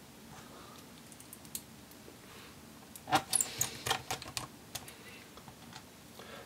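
Quiet room tone broken by a cluster of light, sharp clicks and taps about three to four and a half seconds in, the sound of small hard objects being handled.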